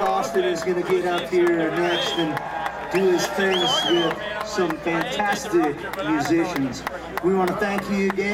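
Concert crowd talking and calling out between songs, several voices overlapping with a few whoops, and no music playing.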